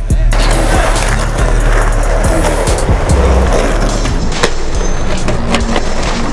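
Skateboard wheels rolling on rough concrete, starting a moment in, with a couple of sharp board clacks near the end. Underneath is a hip-hop beat with a steady bass line.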